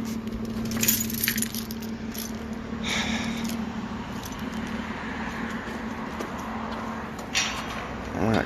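A vehicle's engine idling with a steady low hum, with short clinks and jingles about a second in, again around three seconds in and once more near the end.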